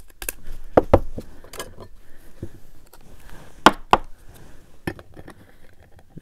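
Hard plastic trading-card holders and display stands clicking and clinking as cards are handled and set up in a row, a scattered string of sharp clicks with the loudest pair a little past the middle.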